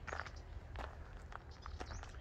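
Faint footsteps on a gravel dirt track, soft crunching steps at an uneven walking pace.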